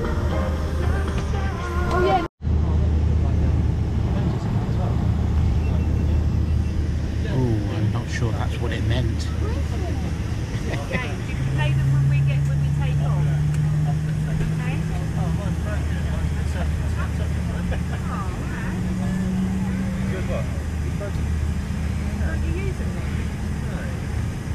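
Airliner cabin ambience aboard a Boeing 747 on the ground while boarding: a steady low hum of the cabin air system with a murmur of passengers' voices. The sound cuts out for a moment about two seconds in.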